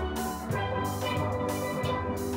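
A steel band playing: several steelpans ringing together in an ensemble, struck notes over a steady lower part.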